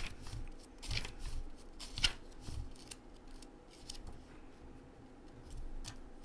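Pages of a small paper oracle-card guidebook rustling as they are leafed through, with two sharper page flicks about one and two seconds in, then fainter handling.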